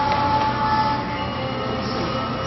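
Steady mechanical hum of running brewery machinery, a constant rumble with a few thin, steady whining tones over it.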